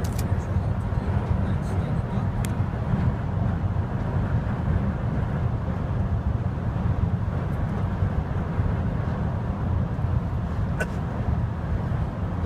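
Steady low rumble of engine and road noise heard inside a moving van's cabin, with a few faint clicks.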